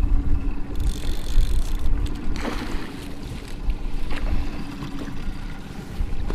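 Wind buffeting the microphone on an open fishing boat over the steady hum of the running boat motor, with a brief rush of noise about two and a half seconds in.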